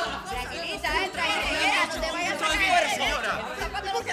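Overlapping voices talking and calling out over background music with a steady low beat.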